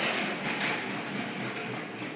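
Shopping trolley with a plastic toy-car front rolling across a hard stone floor, its wheels rattling steadily.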